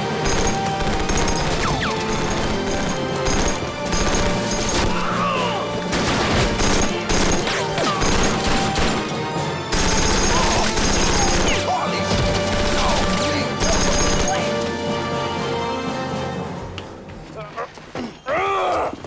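Sustained automatic gunfire in rapid bursts from submachine guns and other firearms, over a background music score; the shooting dies down in the last couple of seconds.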